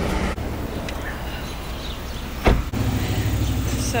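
Low steady rumble of a car engine idling, with one sharp knock about two and a half seconds in.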